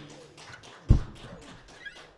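Faint, scattered clicks and knocks, several a second, with one low thump about a second in.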